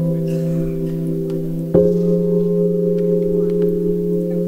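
Keyboard playing a slow intro in held chords: one chord rings on, and a new chord is struck about halfway through and sustained.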